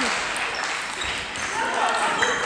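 Table tennis ball clicking off bats and table during a rally, over the steady background noise and chatter of a busy sports hall.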